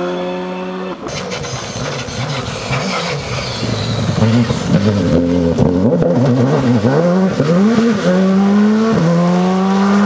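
Rally car engine revving hard up and down through a slide, with sharp crackles, then pulling away and rising steadily through the gears with an upshift near the end. The car is a Skoda Fabia rally car; in the first second, before it, another rally car accelerates away.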